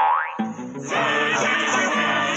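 A cartoon sound effect, a quick rising glide in pitch, at the very start, then a short lull before the song's music comes back in about a second in.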